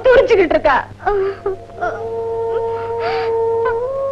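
A woman cries out in anguish, then sobs with breathy gasps. Under her, background music begins about two seconds in: held, mournful notes that shift in pitch now and then.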